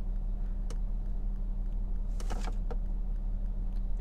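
Steady low hum of a running car, heard from inside the cabin. A light click comes about a second in, and a short rustle from a thick leather lifting belt being handled comes about halfway through.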